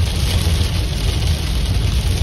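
Car cabin noise while driving on a wet highway in heavy rain: a steady low rumble of tyres on the wet road with the hiss of rain and spray on the car.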